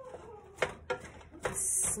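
Wooden spoon knocking and scraping against a square copper-coloured skillet while raw ground beef and onion are stirred, with three sharp knocks. A short breathy sniff comes near the end.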